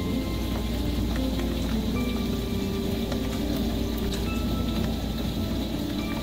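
Hail mixed with heavy rain pelting asphalt: a steady hiss with many sharp clicks of hailstones striking, mostly small ones with a few marble-size. Background music with held notes plays over it.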